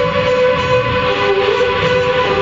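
Live electronic music played through guitar amplifiers: a dense, sustained drone of several held tones over a noisy, rumbling bed. One tone steps down in pitch at the start and a lower tone enters about halfway through.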